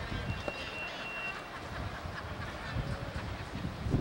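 Outdoor street background noise picked up by a camcorder microphone: a steady low rumble, with one thin, high, steady tone lasting about a second near the start.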